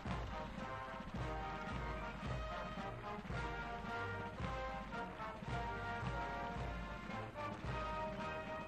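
Military band playing, with sustained wind and brass chords over a steady beat of low drum strokes a little over one a second.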